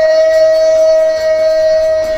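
A singer holding one long, steady note through a microphone over backing music.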